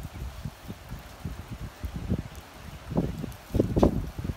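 Wind buffeting the microphone in uneven low gusts, with stronger gusts near the end.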